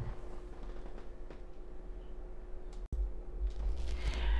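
Quiet room tone: a low rumble and a faint steady hum with a few faint ticks, broken by a sudden brief dropout about three seconds in.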